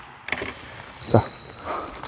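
A lull in an indoor badminton hall: a few faint clicks from shuttlecocks being handled in a basket, and one short spoken word about a second in.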